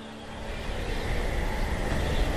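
A low rushing rumble that starts about half a second in and swells steadily louder: a dramatic sound effect in an anime soundtrack.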